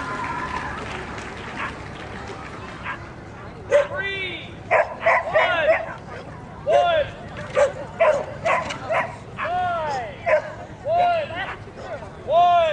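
A dog yipping and squealing over and over in short, high, arching calls. They start about four seconds in and come in irregular clusters.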